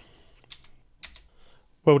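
Computer keyboard keystrokes: a couple of faint key clicks as a digit is typed and Enter pressed at a program's input prompt.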